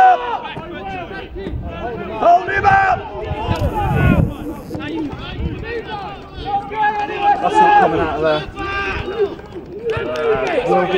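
Overlapping shouted calls from men's voices across a rugby pitch, none of the words clear. A brief burst of noise cuts in about four seconds in.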